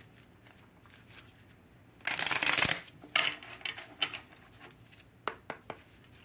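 Tarot cards being shuffled and handled by hand. There is a louder rush of shuffling about two seconds in, with scattered light snaps and clicks of cards around it.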